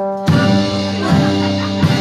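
Live country band playing: a held guitar chord rings, then about a quarter second in the full band comes in together with drums, bass and guitars.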